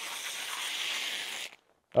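Plastic vacuum-bag film rustling and crinkling as it is peeled back off a cured fiberglass panel. It cuts off suddenly about one and a half seconds in.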